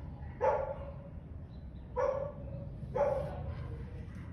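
A dog barking three times: one bark about half a second in, then two more about a second apart near the end.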